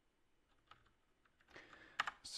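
Faint computer keyboard keystrokes: a few isolated clicks, then a soft hiss near the end.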